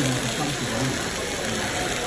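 Restaurant background noise: a steady hiss with indistinct voices of other diners underneath.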